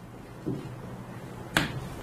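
A single sharp click about a second and a half in, over a low steady hum, with a softer low sound about half a second in.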